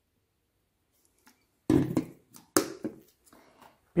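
Near silence at first, then handling noises from gloved hands: a dull knock a little before halfway, a sharp click a second later, and a few light taps and plastic rustles as the disinfectant bottle is put down and the packaged subcutaneous device is picked up.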